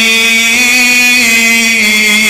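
A man's voice chanting in a sermon's sung style, holding one long note that rises slightly and falls back.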